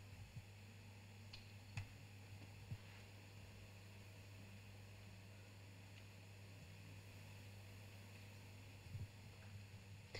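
Near silence: room tone with a low steady hum and a few faint clicks, about two seconds in and again near the end.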